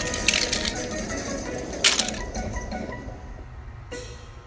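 Plastic toy train cars and die-cast toy cars clacking against each other as they are piled up by hand, with a few clicks early on and one sharp clack about two seconds in. Faint music plays underneath and fades toward the end.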